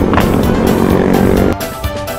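Motorcycle engine running with wind noise on the helmet-mounted microphone, cut off abruptly about one and a half seconds in by background music with a steady beat.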